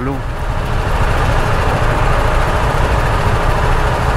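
Riding on a BMW G310R single-cylinder motorcycle: steady wind rush on the helmet microphone over the engine running and road noise, unbroken throughout.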